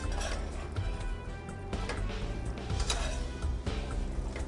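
Background music with sustained tones, under faint clinks and scrapes of a spoon stirring macaroni and cheese in a stainless steel pot.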